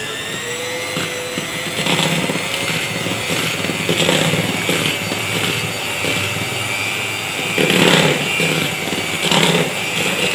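Electric hand mixer running continuously, its beaters working soft butter into flour in a plastic bowl, the sound swelling and easing about once a second as the beaters are moved around.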